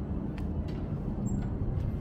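Open-air rooftop ambience: a steady low rumble of wind and distant city traffic, with a few faint ticks.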